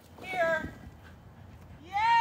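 A woman's single short, high-pitched shouted cue to an agility dog about half a second in, then faint outdoor background.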